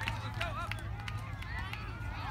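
Voices of players and onlookers talking and calling out, mostly in the first half, over a steady low rumble.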